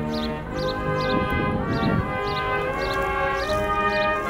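Military brass band with sousaphone, saxophones and trumpets playing slow, held chords that change every second or so.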